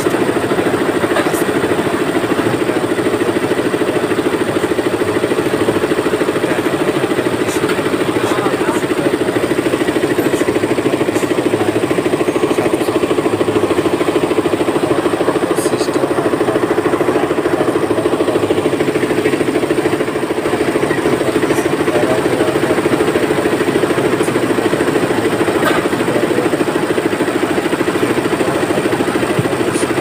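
Multi-head industrial embroidery machine running, its needles stitching at a fast, even rate in a loud, steady mechanical rattle, easing slightly for a moment about two-thirds of the way through.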